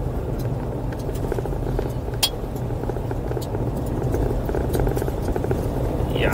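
2023 VW Amarok pickup driving on a bumpy gravel road: a steady low rumble of engine and tyres on gravel, with scattered ticks and one sharper tick about two seconds in.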